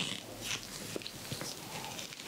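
A metal cuticle tool scraping along a fingernail and cuticle in a series of short, close-miked scratches.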